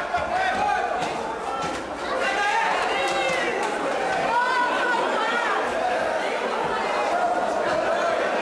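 Boxing crowd in a hall, many voices talking and shouting over one another, steady throughout with no single voice standing out.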